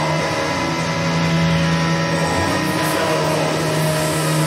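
Black metal music: a dense wall of sustained, distorted guitar chords holding steady pitches, with no clear drum beat.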